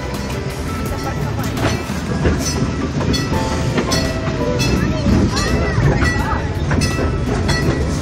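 Zoo passenger train running along its track, heard from inside an open car: a steady low rumble of the wheels with irregular clicks and clatter over the rails.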